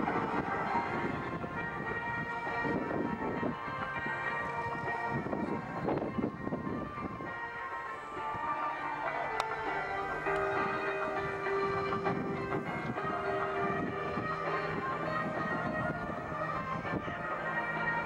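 Background music with held chords, mixed with the steady drone of the piston engines of three Extra 330 aerobatic planes flying a formation pass.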